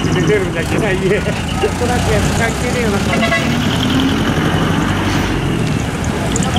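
Engines of vehicles driving slowly past: a flatbed car-carrier truck, then a large sedan, running steadily, with people talking close by.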